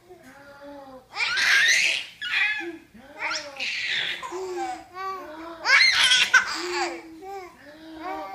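A baby of about four and a half months laughing hard while being tickled, in several high-pitched outbursts with breathy catches between them, loudest about a second and a half in and again about six seconds in.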